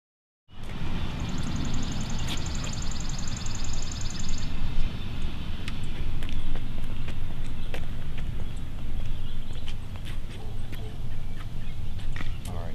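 Outdoor background noise with a heavy low rumble, starting after half a second of silence. A bird's rapid, even trill runs for about three seconds near the start, and light clicks are scattered through the rest.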